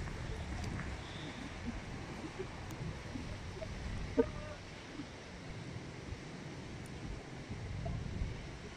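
Gusty storm wind buffeting the microphone over the steady wash of breaking surf. A brief short call is heard about four seconds in.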